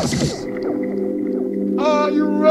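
Hardcore rave DJ mix going into a breakdown: the beat drops out about half a second in, leaving sustained synth chords. Near the end a long, pitched vocal cry comes in over them.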